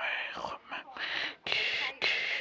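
A person whispering in short breathy phrases.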